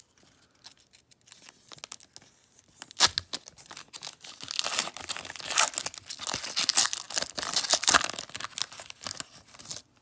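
Foil wrapper of a Panini Contenders Draft Picks trading-card pack being torn open and crinkled. It starts with faint crackles, then loud crackling runs from about three seconds in until just before the end.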